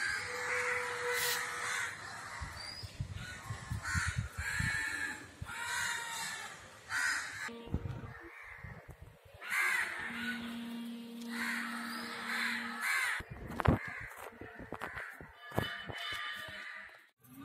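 Crows cawing again and again, harsh calls about once a second. A steady low tone hums in the background for a few seconds in the middle.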